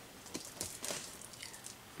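A few faint, light clicks and rustling as small scissors are worked by hand at a gift package.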